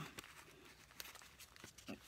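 Near silence, with a few faint rustles and soft clicks from a paper napkin being handled and pressed between the fingers.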